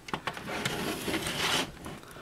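Handling noise of SATA power and data cables being pushed and rubbed into the side of a small PC chassis: a rough scraping and rustling, with a few light clicks. It fades out near the end.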